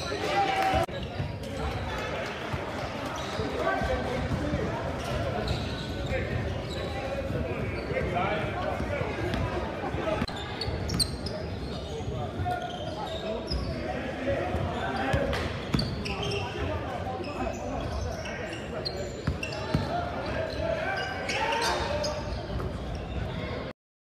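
Basketball game sound in a large gymnasium: players and spectators calling out over one another, with a basketball bouncing on the hardwood floor in sharp knocks, all echoing in the hall. The sound cuts off suddenly near the end.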